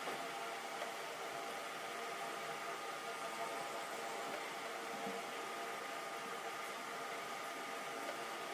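Steady whirring background noise, an even hiss with a faint constant hum, like a small electric fan or appliance running in the room.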